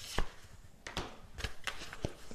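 A few light, sharp taps over faint room noise, the loudest just after the start and two more about a second in.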